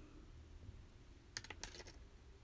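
A few faint light clicks in quick succession about one and a half seconds in, from small metal earrings being handled in the fingers; otherwise near silence with a faint low hum.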